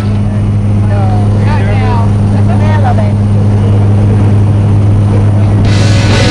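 Steady drone of the jump plane's engine, heard inside the cabin, with voices calling out over it about a second in. Near the end a loud rushing noise comes in on top.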